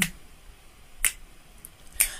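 A single sharp finger snap about a second in, keeping time between sung lines of an a cappella song, over quiet room tone.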